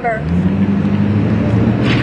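A motor vehicle's engine running with a low steady hum that comes in just after the speech stops.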